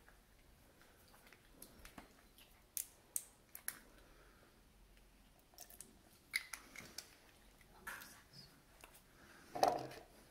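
Faint, scattered small clicks and taps from handling glue containers, a small hardener bottle and a plastic mixing pot on a wooden table, with a louder knock near the end as stirring begins.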